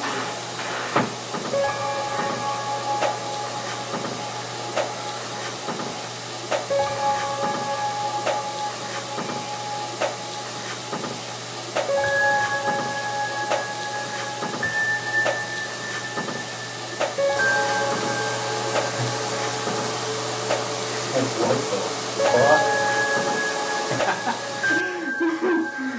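Tap water running steadily from a bathroom sink faucet into the basin. Under it is a music score of sustained held tones with faint regular ticks.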